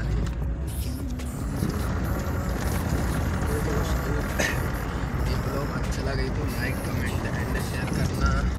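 Steady low rumble of a car running, heard from inside its cabin, with a man talking over it.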